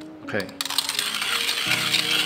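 1Zpresso Q Air hand grinder grinding coffee beans: a dense crunchy crackle of beans breaking in the burrs begins about half a second in as the crank is turned.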